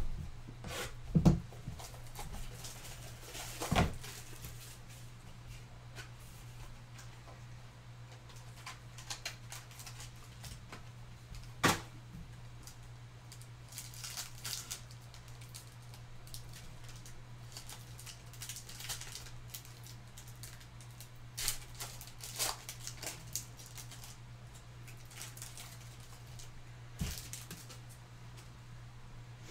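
Basketball trading cards and their pack being handled: scattered soft clicks and rustles as cards are slid apart and flipped, over a steady low hum.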